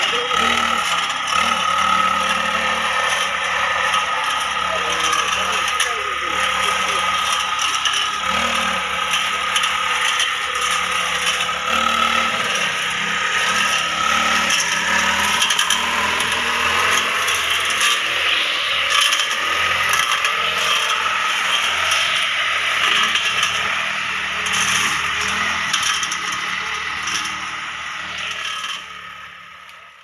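Backpack brush cutter's small two-stroke engine running at a steady high speed while cutting weeds, a constant whine that fades out at the very end.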